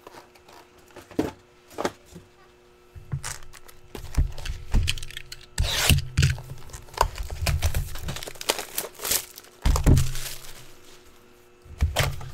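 A trading-card box being opened by hand, with the foil packs handled: wrappers crinkle, cardboard and wrap tear, and there are scattered clicks. From about three seconds in there are louder knocks and rubbing of the box against the table, strongest around the middle and again near the end.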